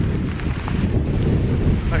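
Strong wind buffeting the camera's microphone in a storm: a loud, steady low rumble.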